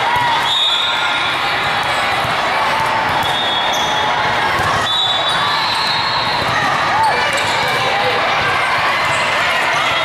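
Busy indoor volleyball tournament hall: many voices chattering and calling, volleyballs being hit and bouncing on the courts, with short high squeals scattered throughout, all echoing in the large hall.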